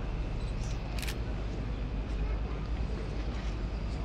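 A camera shutter clicks about a second in, over a steady low rumble of outdoor ambience with indistinct background voices.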